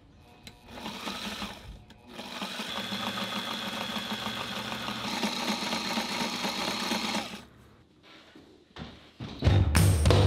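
Portable heavy-duty sewing machine stitching hook-and-loop tape onto bimini fabric: a short burst, then a steady run of about five seconds, its needle going in a fast, even rhythm. Loud music comes in near the end.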